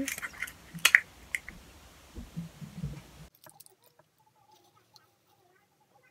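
A sharp click and soft scraping and rustling as a plastic measuring spoon scoops dry coffee grounds. The sound cuts off abruptly about three seconds in, leaving near silence.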